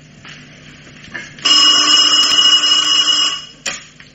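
Telephone bell ringing once, steadily for about two seconds, followed by a short click.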